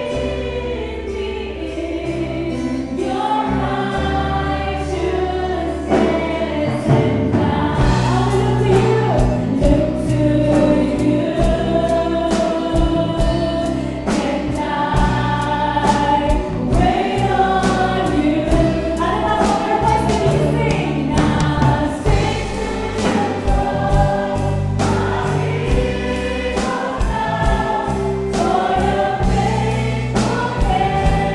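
Live praise and worship song: a woman sings lead with a group of backing singers, over a band of electric keyboard, acoustic and electric guitars, bass and drum kit. The drums keep a steady beat that grows fuller about six seconds in.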